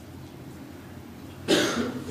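A pause of quiet room tone, then a single short cough close to a microphone about a second and a half in.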